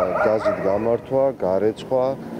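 Speech: a man talking in Georgian.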